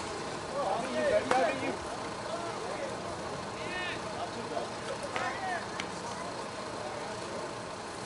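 Scattered distant voices of softball players and spectators calling out, with a few faint knocks. Right at the end comes a sudden sharp crack: a slowpitch softball bat hitting the ball.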